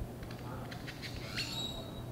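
A bird calling faintly with a short, high, thin whistle near the end, over steady quiet outdoor background noise.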